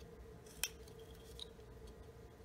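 Small whittling knife (Flexcut detail knife) cutting into a soft basswood block: one sharp snick a little over half a second in as a cut is taken, and a fainter one later.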